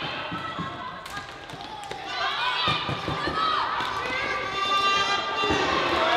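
Live floorball play: sharp clacks and taps of sticks and the plastic ball, with players and spectators shouting and calling out in high-pitched voices from about two seconds in.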